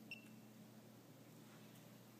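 Near silence broken by one faint, short beep just after the start: the key-press beep of a URC MX900 universal remote control as a button is pressed. A faint steady hum lies underneath.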